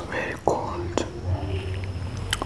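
Close-miked mouth sounds of someone drinking a milky drink from a glass: a breathy sound at the start, then two sharp mouth clicks about half a second apart, followed by a low hum.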